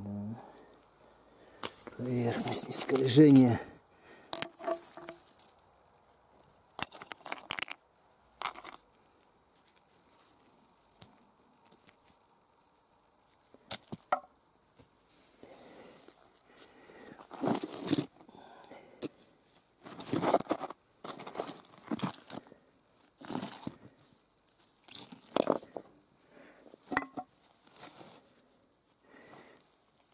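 Lumps of quartz being turned over and shifted by a gloved hand: a string of short, separate scrapes, rustles and knocks of stone against stone and gravel. About two seconds in, a brief sound from a person's voice.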